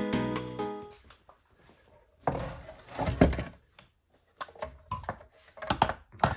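Background music fading out in the first second, then clunks and knocks of a digital scale and a heavy copper heat exchanger being set down and shifted on a wooden workbench, followed by a run of lighter clicks and knocks.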